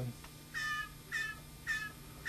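Young blue jay giving three short begging calls about half a second apart while being hand-fed.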